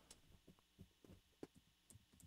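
Near silence: a pause between speakers, with a few faint soft clicks.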